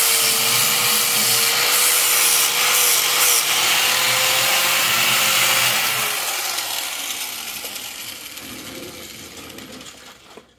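Angle grinder with a flap disc grinding the bottom edges of a steel Ford 9-inch axle housing, cleaning them up as weld surface, with a steady high motor whine over the grinding. About six seconds in it is switched off and winds down, falling in pitch and fading away.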